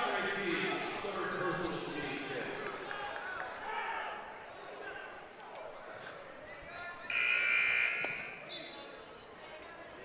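Voices echoing faintly in a gymnasium, then about seven seconds in a one-second blast of the scorer's table horn, signalling a substitution during a stoppage in a basketball game.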